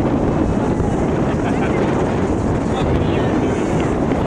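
Steady wind rumble buffeting the camera microphone, with faint distant voices of people on the field.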